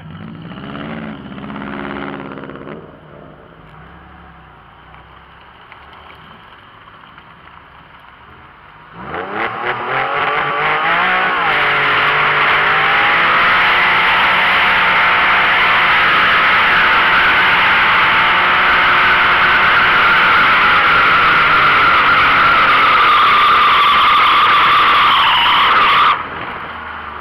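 Porsche 911 (996) Carrera 4's flat-six engine revving briefly, running quietly, then about nine seconds in rising sharply and held at high revs through a long burnout, the tires spinning and squealing on the tarmac. The noise cuts off suddenly at the end.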